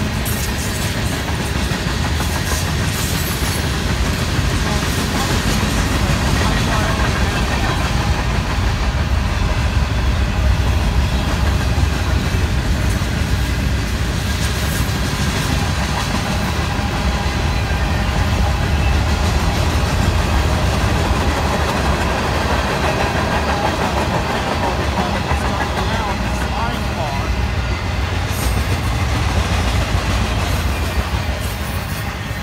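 Freight train cars (boxcars, a tank car, covered hoppers and trailers on flatcars) rolling past: a steady noise of steel wheels running on the rails and the cars rattling.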